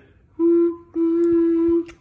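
A whistle blown twice at one steady pitch: a short toot, then a longer one lasting nearly a second.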